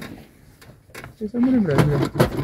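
A few light clicks as small loose parts of a clutch pedal assembly that has come apart are handled, then a person's voice comes in briefly near the end.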